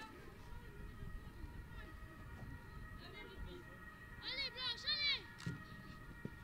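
Faint, distant shouting of women's voices on a football pitch: a few short high-pitched calls about four to five seconds in, with a single thud just after.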